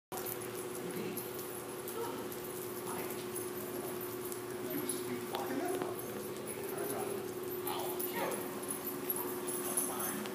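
Dogs whimpering in several short whines that rise and fall in pitch, over a steady hum.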